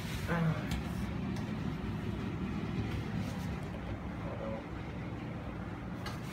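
A steady low background rumble outdoors, with no clear single event; the air conditioner's condenser unit is not yet running.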